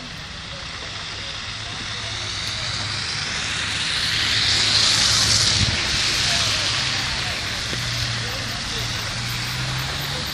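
A car passing on a slushy, wet road: its tyre hiss swells to its loudest about halfway through and then fades away, over a low steady hum.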